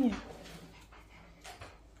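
White Pomeranian dog making a faint, low, drawn-out vocal sound, with a couple of small brief sounds later on.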